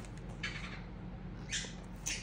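Clear plastic packaging of a metal die set being handled: two brief crinkles.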